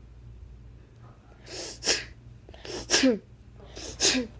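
A person sneezing three times, about a second apart, each a sudden loud burst ending in a short falling voiced sound.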